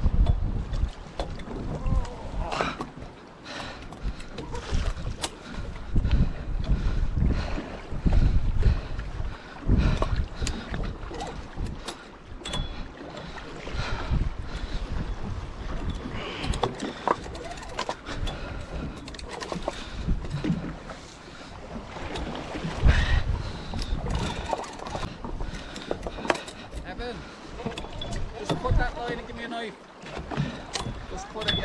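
Wind buffeting the microphone in repeated gusts, over sea water washing along the boat's hull, with scattered clicks and knocks from the rod and reel being worked.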